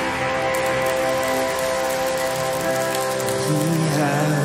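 Live worship band music: a held, shimmering chord over a hiss-like wash, with a voice starting to sing near the end.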